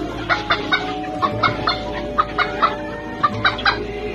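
Chickens clucking in a quick run of short calls, about three a second, over background music.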